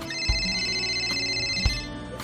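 Smartphone alarm ringing with steady high tones over background music, cutting off near the end as it is switched off.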